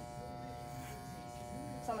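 Electric hair clippers running with a steady buzz, held against a man's head to cut his hair.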